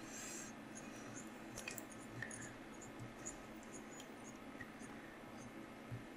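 Faint rubbing and a few small, scattered ticks as tying thread and fingers work on a hook held in a fly-tying vise, wrapping a yellow thread onto the hook.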